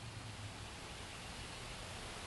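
Faint, steady background hiss with a low hum underneath, and no distinct sound from the terrapin.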